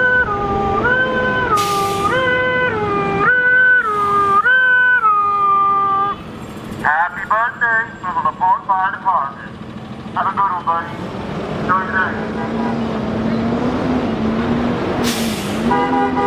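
Fire truck electronic siren in a two-tone hi-lo pattern, stepping between a higher and a lower pitch about every three-quarters of a second for the first six seconds. Then come several clusters of short, rapid warbling siren bursts, followed by a low steady hum to the end. A few brief hisses come through along the way.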